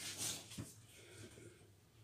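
Faint handling noise: a brief soft rustle followed by one light tap, then near silence.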